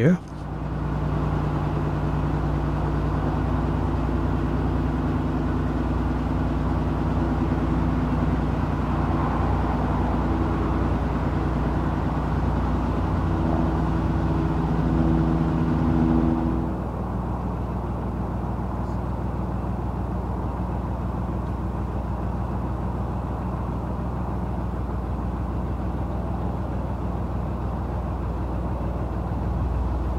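Narrowboat engine running steadily at cruising speed, a low even drone with a steady hum of tones. About halfway through the sound shifts abruptly to a slightly quieter, lower-pitched run.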